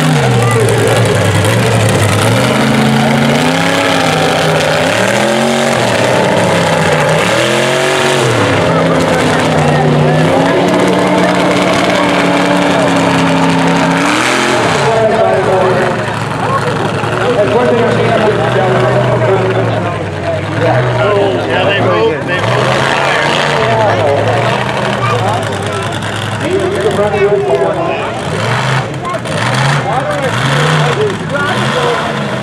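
Monster truck engine revving hard, its pitch climbing and falling again and again. It grows fainter and more broken about halfway through.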